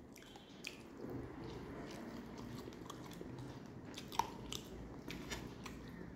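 Close-miked chewing of a mouthful of rice and katla fish curry: a steady soft mouth noise with scattered wet clicks, the sharpest about four seconds in.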